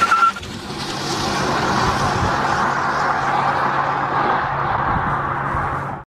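A steady rushing noise with a low hum, like a car driving. It opens with a brief high tone and a few clicks, swells over the first second, then holds and cuts off abruptly at the end.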